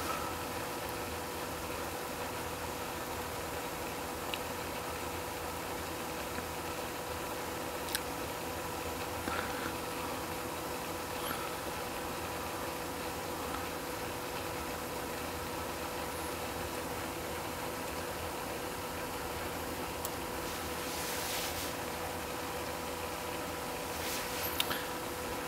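Steady low background hum with a few faint, short clicks scattered through, from a laptop touchpad being clicked; a brief soft hiss near the end.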